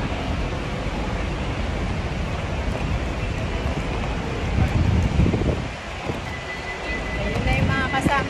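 Wind buffeting a phone's microphone over a steady outdoor rumble, with a louder gust about five seconds in. A faint steady high tone sounds in the last two seconds.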